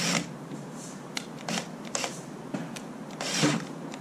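Cordless drill with a 5/16-inch nut driver tightening the stainless steel clamp screws of a rubber no-hub coupling. It runs in short spurts with clicks, the longest spurt about three and a half seconds in.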